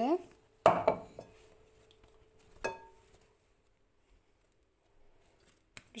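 Two sharp knocks of a mixing bowl while dough is worked in it, about two seconds apart, the second leaving a brief ring.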